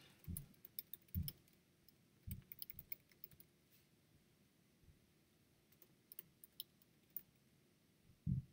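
Faint computer keyboard and mouse clicks, scattered and irregular, with a few soft low thumps in the first few seconds.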